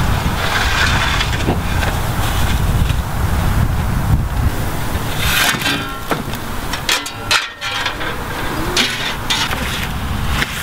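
Outdoor background of steady traffic rumble from a busy road, with wind buffeting the microphone.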